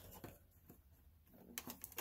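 Near silence, with a few faint taps and light rustles of a cardboard model-aircraft box being handled, a small cluster of them near the end.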